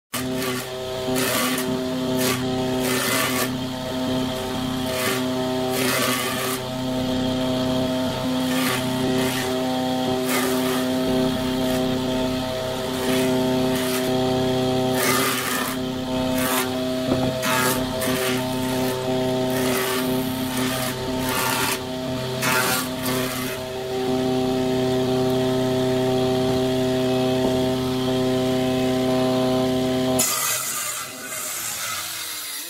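Jointer on a combination woodworking machine running with a steady motor hum, with repeated short bursts of cutting noise as the edge of a thick hardwood slab is passed over the cutterhead. The bursts come every second or two, thinning out in the second half.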